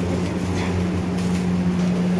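A steady low machine hum with a constant pitch.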